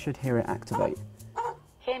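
A dog barking in a few short barks.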